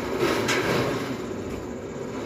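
A ball rolling down and around a metal-rod rail track, a steady rumble with a sharp click about half a second in.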